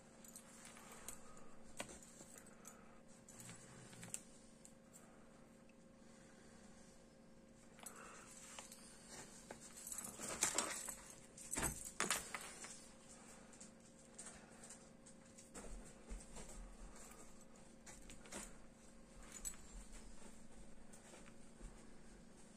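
Faint handling sounds of a yarn needle being worked through a stuffed crocheted piece: soft rustles with light clicks and clinks of beads and metal bangles on the wrist, busiest about ten to twelve seconds in. A faint steady hum runs underneath.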